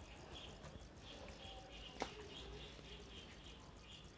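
A bird chirping faintly, short high chirps repeated steadily, with a single sharp click about halfway through.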